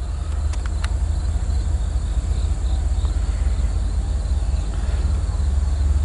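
Loaded CSX coal train's hopper cars rolling past, a steady low rumble.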